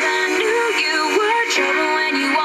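A pop song with a sung melody playing from an FM radio station through the cabin speakers of a pickup truck, with little bass.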